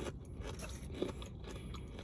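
A person chewing fried chicken close to the microphone, with faint crunches and small wet clicks scattered through a steady low hum.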